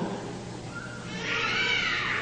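An audience reacting with many voices at once, rising and falling together in a brief cheer-like swell that starts just under a second in.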